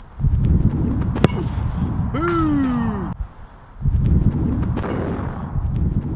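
A football struck hard with the instep in a power shot: one sharp thwack about a second in, over wind rumbling on the microphone. A falling vocal whoop follows a second later.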